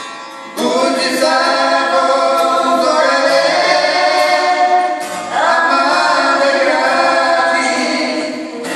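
A man and a woman singing a song together to a strummed acoustic guitar, in long held phrases; the singing comes in about half a second in and a new phrase begins about five seconds in.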